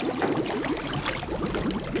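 Bathwater sloshing and splashing in a tub, with many short bubbling gurgles.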